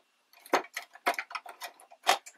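Irregular small clicks and crackles of crinkled momigami paper being handled and positioned by hand, starting a moment in.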